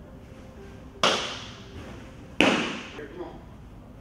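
Two sharp pops of a thrown baseball smacking into a leather glove, about a second and a half apart, each echoing briefly off the walls of a large indoor training hall.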